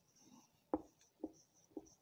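Marker pen writing on a whiteboard: a few short, faint strokes as letters are written.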